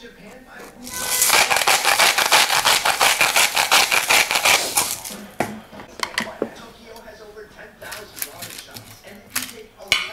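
Hand-twisted sea salt grinder crushing salt: a rapid run of crunching clicks lasting about four seconds, then a few scattered light knocks.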